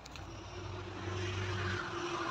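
A motor vehicle's engine running and passing nearby, a steady hum that grows louder over the first second.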